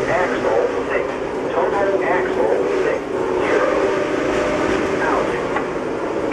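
Indistinct talk from several people over a steady hum.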